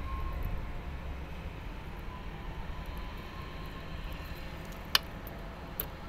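Low, steady background rumble, with one sharp click about five seconds in and a fainter one just before the end, from wires and a screwdriver being worked at a control-panel terminal block.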